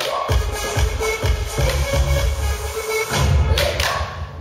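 Upbeat dance music with a steady, regular bass beat.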